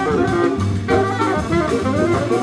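Live jazz combo playing: a saxophone carries the lead line over piano, upright bass and drums with a steady cymbal pulse.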